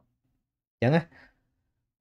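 A man's single short spoken syllable about a second in, trailing off into a faint breath.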